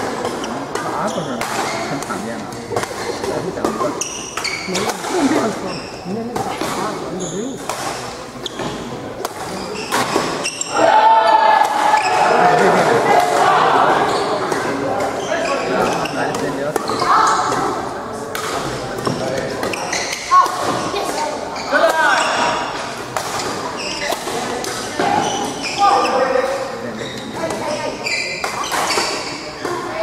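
Badminton rally in a large echoing hall: rackets striking a shuttlecock in sharp, irregular hits, over the chatter of people around the courts.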